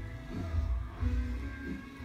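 Background music playing, with a strong pulsing bass line under steady held tones.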